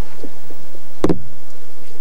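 A single sharp knock about a second in, with a few much fainter ticks before it, over a faint steady hum.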